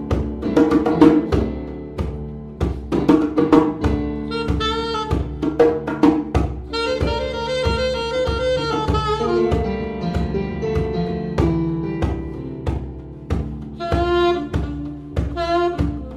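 Live instrumental jazz: a saxophone plays the melody over keyboards and hand percussion keeping a steady beat, with a run of short notes and then longer held notes near the middle.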